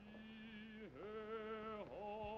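A man singing in an operatic style, faint, holding two sustained notes with vibrato, each about a second long with a brief dip in pitch between them: a singer practising.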